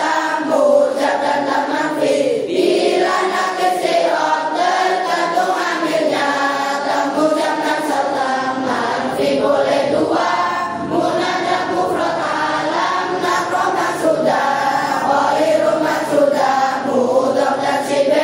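A large group of children singing Arabic grammar verses (nahwu nadzom) together in a steady chant-like melody.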